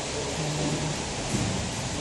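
Steady, even hiss of the tank hall's background noise, with faint distant voices now and then.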